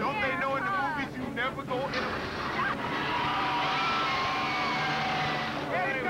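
Riders in a boat screaming and yelling, their cries swooping up and down for about two seconds. Then a steady rushing noise comes in, with long drawn-out screams held over it, and the voices break off near the end.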